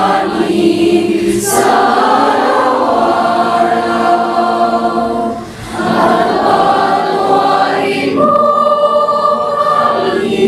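A girls' choir singing, in long held notes, with a brief break about halfway through and a chord held through the last two seconds.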